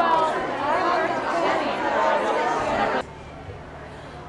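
Crowd chatter: many people talking at once in a room. It cuts off abruptly about three seconds in, leaving a quieter low steady background.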